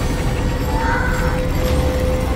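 Trailer sound design: fast mechanical ratcheting and rattling under a single held musical tone, with a brief high squeal about a second in.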